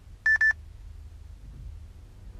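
Two short electronic beeps at the same pitch, one right after the other, about a quarter second in.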